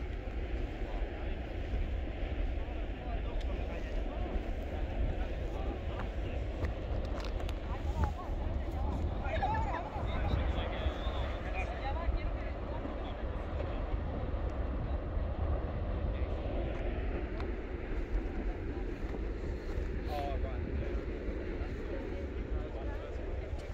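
Steady wind rumbling on the microphone with a rushing noise underneath, and faint voices of people nearby now and then, mostly around the middle and near the end.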